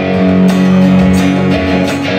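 Acoustic and electric guitars playing together live, strummed chords ringing out, with a few sharp strums.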